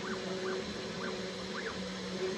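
C4NminiTK desktop CNC router carving wood: the router spindle running steadily at full speed with a constant hum, while the axis stepper motors give short rising-and-falling whines several times, about every half second, as the bit moves along the carving path.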